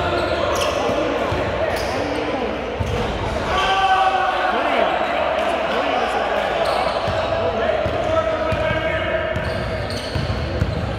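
A basketball being dribbled on a hardwood gym floor, the bounces echoing in a large hall, with players' indistinct voices calling out.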